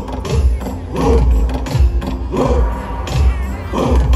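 Traditional Nyishi festival dance music: voices chanting together in a rising and falling line over a steady, deep, repeating beat.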